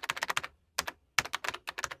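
Computer keyboard typing sound effect: rapid key clicks in runs, pausing briefly around half a second in and again about a second in before a final quick run.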